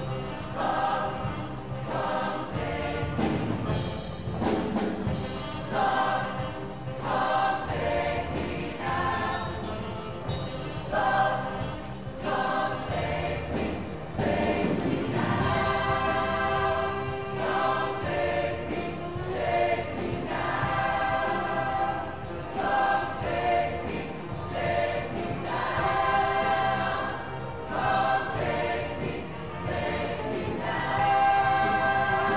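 Mixed show choir singing together, its voices coming in short phrases about a second apart.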